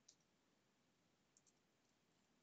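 Near silence, with a few faint computer keyboard key clicks near the start and again about one and a half seconds in.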